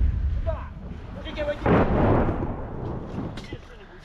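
An artillery shell exploding about two seconds in: a sudden blast followed by a rumble that dies away over a second or so.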